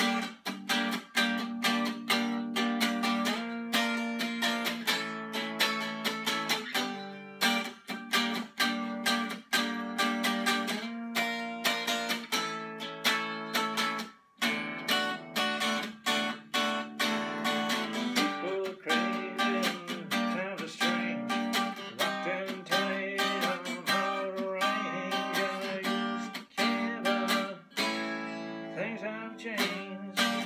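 Hollow-body archtop electric guitar being played, a steady stream of picked notes and strummed chords ringing over a sustained low note, with one brief break about fourteen seconds in.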